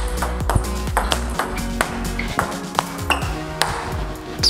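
Table tennis rally: the ball clicking off the rackets and the table about every half second, over background music with held notes.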